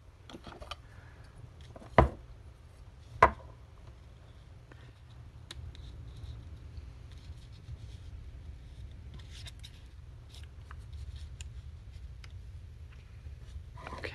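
Light handling and rustling of paper on a craft table, with two sharp knocks a little over a second apart about two seconds in, as hard objects are set down or tapped on the tabletop, over a low steady hum.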